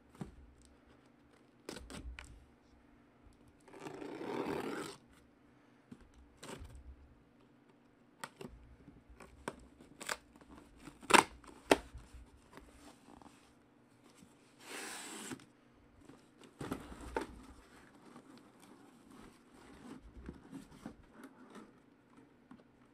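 A taped cardboard case of trading-card hobby boxes being opened and unpacked by hand: cardboard tearing and scraping, with two longer rips about four and fifteen seconds in, and scattered sharp knocks and clicks as the boxes inside are handled.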